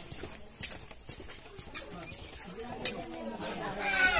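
Footsteps on a concrete walkway, a series of short clicks about every half second, under faint voices of people talking; one voice grows louder near the end.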